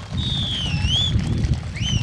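Audience members whistling during a pause in the speech: two sliding whistles, the first dipping then rising, the second rising and then held, over a low crowd rumble.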